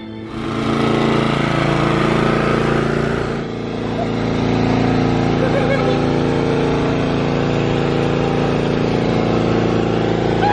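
A small engine running steadily, such as a lawn mower, its sound shifting slightly about three and a half seconds in.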